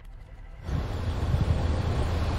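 Steady low rumble of outdoor background noise, rising in level about half a second in.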